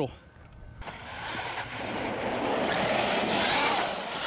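Arrma Fireteam 1/7-scale electric RC truck driving on asphalt. After a quiet first second, the motor and tyre noise builds to its loudest around three seconds in as the truck slides its back end using its handbrake, then eases off.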